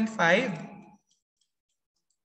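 A man speaking for about the first second, his words trailing off, then near silence.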